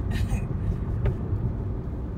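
Steady low rumble of a car's engine and tyres, heard from inside the cabin while driving at road speed, with a brief click about a second in.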